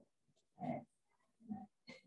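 Three short, faint sounds of a person's voice, like murmured syllables: the first a little after half a second in and the last near the end.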